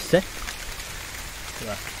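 Steady rain falling on leaves and wet ground, an even hiss.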